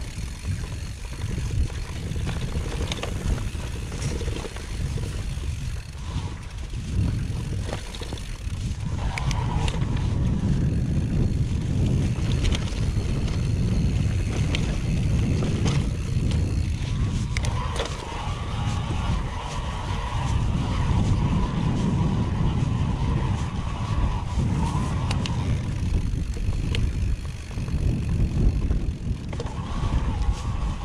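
Mountain bike riding down a rough grassy singletrack: a steady low rumble of tyres and wind buffeting the rider-mounted microphone, with frequent small knocks and rattles from the bike over bumps. A higher buzz comes in for several seconds in the second half.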